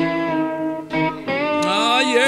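Instrumental opening of a blues song, a guitar playing lead over the band, with notes bent upward near the end.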